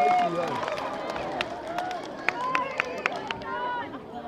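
Players and spectators at a school rugby match calling and shouting, loudest at the start, with a few sharp single claps in the middle.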